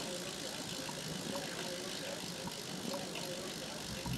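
Bicycle rear cassette and wheel being handled, making a faint steady mechanical rattle with small scattered ticks.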